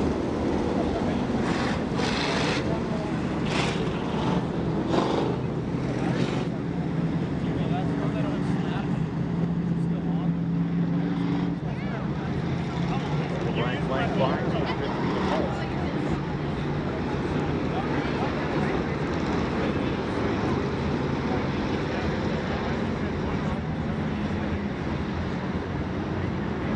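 A field of WISSOTA Street Stock race cars running at low speed under caution, a steady low engine rumble with faint held pitches. A few short sharp noises come in the first six seconds.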